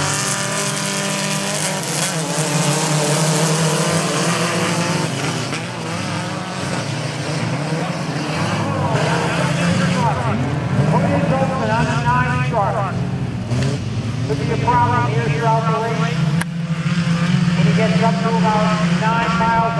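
Engines of several compact pickup race trucks running on a dirt track, a steady low engine drone with revs rising and falling, while people talk nearby.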